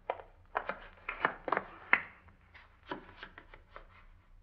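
Radio-drama sound effects: about a dozen short, irregularly spaced taps and knocks, over the low hum of an old broadcast recording.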